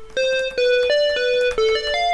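MuseScore's synthesized instrument playback sounding a line of single notes, about three a second, stepping up and down in pitch.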